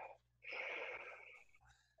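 A person taking one slow, deep breath, audible as a breathy rush for about a second.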